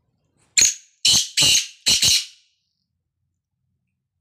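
Caged black francolin calling: a loud phrase of four rasping notes over about two seconds, the last note doubled.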